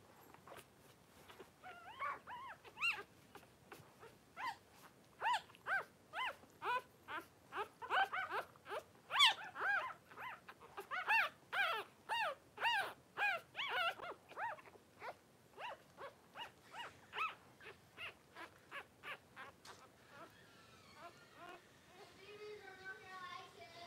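Newborn Cavalier King Charles spaniel puppy crying: a long run of short, high squeals, one or two a second, each rising and falling in pitch. The squeals are loudest in the middle and thin out toward the end.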